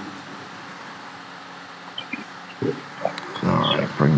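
Quiet room tone with a steady low hum, a couple of faint clicks, and a short muffled voice sound near the end.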